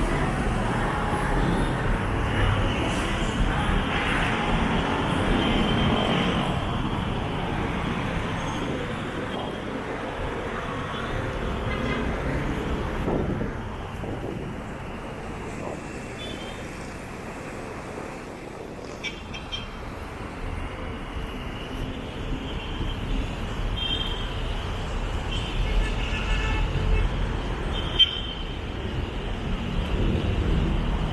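Busy multi-lane road traffic heard from above: a steady rush of passing cars, buses and motorcycles. In the second half come a few brief high-pitched sounds, with a sharp one near the end.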